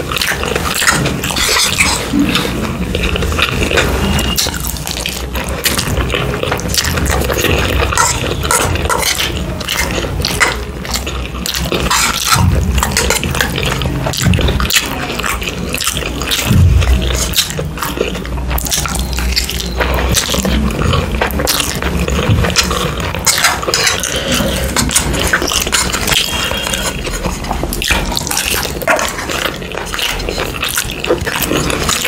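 Close-miked eating sounds of a person chewing mouthfuls of noodles: wet smacks and clicks, one after another.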